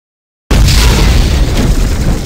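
A cinematic explosion sound effect for an animated planet collision. It starts suddenly with a loud, deep boom about half a second in, then rumbles on and slowly fades.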